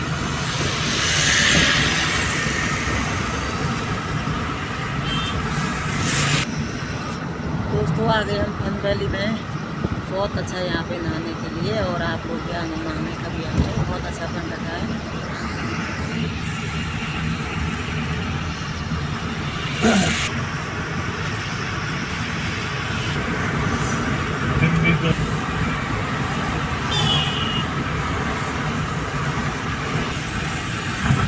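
Steady road and engine noise heard from inside a moving car's cabin at highway speed, with a short knock about two-thirds of the way in.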